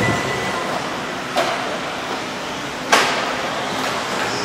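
Radio-controlled 4WD off-road buggies racing on an indoor dirt track: a steady whirring noise of motors and tyres, echoing in the hall, broken by two sharp knocks about a second and a half apart.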